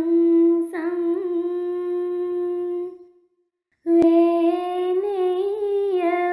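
A girl's voice chanting a Pali Buddhist verse (gatha) in long, drawn-out held notes, with a short break about three seconds in before the chant resumes.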